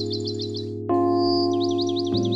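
Calm ambient background music of sustained chords that change just before a second in, with bird chirps over it: a quick run of short chirps, then a held whistle and a series of quick swooping notes.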